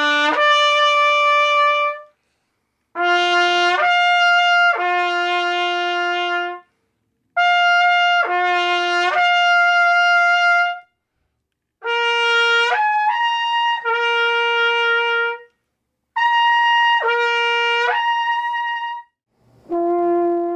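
Trumpet playing five short slurred phrases with brief pauses between them, each phrase leaping up and back down between low and high notes.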